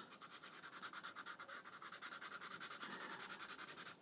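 Sharpie permanent marker scrubbing back and forth on sketchbook paper as a shape is coloured in solid. Faint, quick, even strokes.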